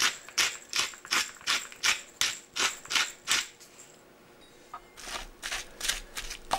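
A metal hand-held pepper mill being twisted over a bowl: about ten short grinding strokes, roughly three a second, stopping after three and a half seconds. Near the end, softer scraping as a fork starts tossing the shredded cabbage and onion.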